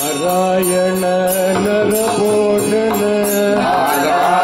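Carnatic devotional bhajan: voices singing long held notes that glide slowly in pitch, with small cymbals struck in time.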